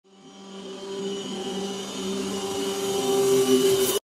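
Logo-intro sound effect: a steady low droning tone that swells louder over about four seconds while a hiss builds up, then cuts off suddenly.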